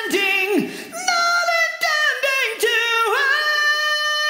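A male rock vocalist singing high, recorded on an AKG C414 XLS condenser microphone with reverb added. A run of short sliding notes settles about three seconds in into a long held note with vibrato.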